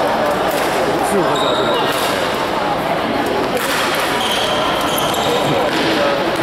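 Busy badminton-hall ambience: a steady hubbub of many overlapping voices, with several sharp knocks and thuds from play on the courts.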